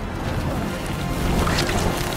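Dramatic film score music over a deep, steady low rumble, with a sharp swishing hit about three-quarters of the way through.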